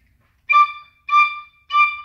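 Tin whistle playing three short, detached notes of the same pitch, evenly spaced: eighth notes sounded on the upbeat.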